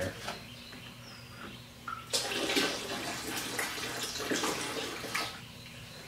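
Liquid iron poured from a plastic jug into a bucket of water: a steady pour that starts about two seconds in and runs for about three seconds.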